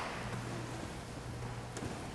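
Church room tone: a steady low hum under faint hiss, with a small click near the end.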